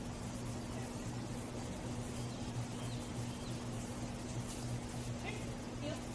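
A steady low hum under a constant background hiss, with a couple of faint, brief higher sounds near the end.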